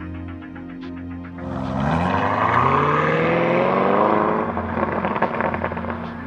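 A V8 engine revving hard, its pitch rising for about three seconds, then crackling and popping from the exhaust as it comes off the throttle. Background music plays throughout.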